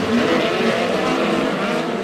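Several midget race cars with four-cylinder engines running at racing speed on a dirt oval. Their overlapping engine notes waver up and down in pitch.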